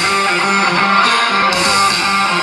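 Live rock band playing loudly through the stage sound system, with electric guitar strumming to the fore.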